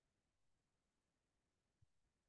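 Near silence: faint room tone, with one brief, very faint low thump near the end.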